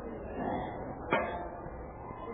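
Muffled background noise with one sharp knock a little over a second in.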